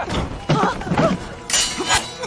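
A woman crying out in short, pitched shouts, then a loud, sudden crash near the end, a staged fight sound effect.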